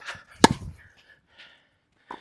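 Tennis ball struck once by a racket strung with new Kirschbaum Flash 1.25 mm string: a single sharp pop about half a second in.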